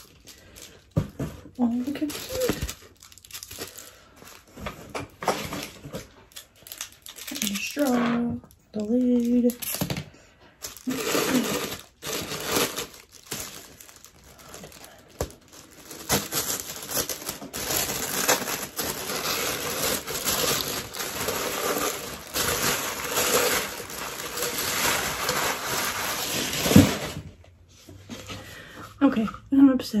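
Tissue paper crinkling and rustling as it is unwrapped from a plastic cup, in short bursts at first, then a longer stretch of steady rustling from about halfway in until shortly before the end.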